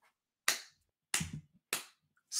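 Three sharp hand claps, about half a second, a second and a quarter, and a second and three quarters in.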